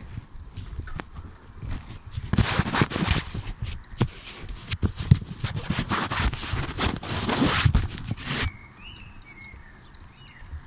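Handling noise on a phone's microphone while riding: a long stretch of loud rustling and buffeting with many small knocks and clicks, dropping away sharply about eight and a half seconds in.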